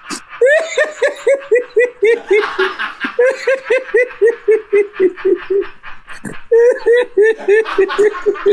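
A person laughing hard and long: rapid runs of 'ha' pulses, about five a second, broken twice by quick breaths.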